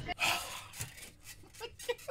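A man sighs, then breaks into short breathy gasps of held-in laughter, with a few brief voiced catches near the end.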